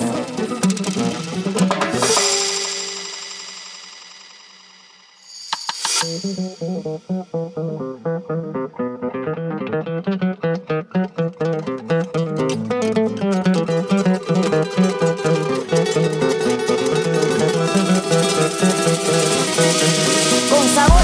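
Afro house DJ mix played over a sound system. A couple of seconds in, the music breaks down to a single fading sound. About six seconds in, after a short bright swell, a new passage with a steady beat comes in and grows brighter over the next several seconds.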